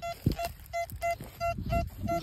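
Metal detector beeping over a buried metal target as its search coil is swept across the soil: short, identical tones at one pitch, repeated about four times a second.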